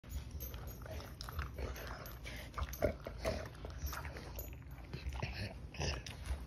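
Chocolate Labrador chewing food, with irregular crunches and mouth clicks; the loudest crunch comes about three seconds in.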